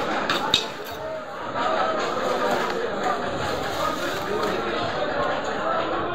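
Chatter of several voices, with a few sharp knocks of a knife striking the wooden chopping block about half a second in.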